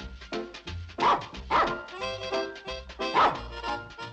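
Background music with a small dog barking three times over it: once about a second in, again half a second later, and once more a little past the three-second mark.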